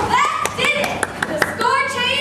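A few scattered hand claps from the audience among children's voices, just after the singing has stopped.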